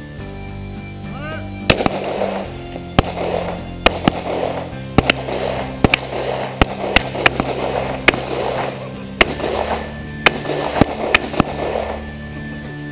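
Handguns fired by more than one shooter: about twenty sharp shots in an uneven string, starting about two seconds in, some in quick pairs and some a second apart, each shot trailing off in a brief echo, over background music.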